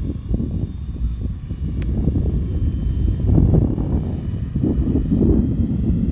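Multirotor drone flying overhead on an automated guided-flight leg, its propeller noise heard from a distance as a steady faint whine over a low, uneven rumble.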